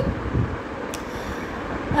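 A pause in speech filled by steady, low background noise, with a single short click about a second in.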